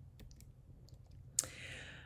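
A single sharp click about one and a half seconds in, from a computer mouse or key advancing a presentation slide, followed by a brief soft hiss. Faint low room hum underneath.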